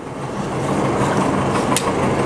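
Sheets of paper rustling as they are handled and turned at a podium microphone, a crackling rustle that grows louder, with one sharp crinkle just before the end, over a steady low hum.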